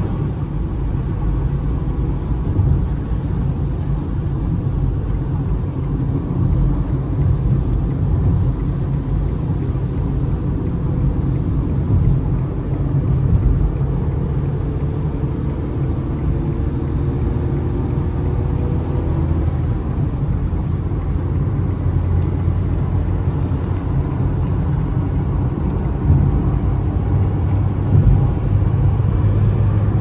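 Steady in-cabin drone of a small petrol car at highway speed, tyre and wind noise mixed with the engine of a Citroën C3 1.0, a three-cylinder.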